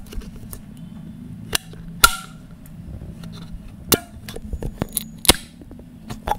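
A metal drink can of date milk being handled and its pull-tab lid worked open: a series of sharp clicks and snaps, the loudest about two seconds in with a short metallic ring, and another near the end followed by a brief hiss. A steady low hum runs underneath.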